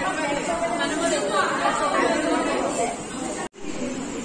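Several young women's voices talking over one another in a classroom, general chatter with no one voice standing out. The sound cuts out abruptly for a moment about three and a half seconds in.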